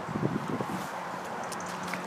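Light wind buffeting the microphone over faint outdoor background noise, with a faint steady low hum in the second half.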